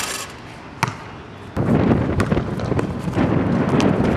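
A basketball bouncing on an outdoor hard court: two sharp bounces in the first second, then from about one and a half seconds a loud rough rushing noise takes over, with a few more knocks in it.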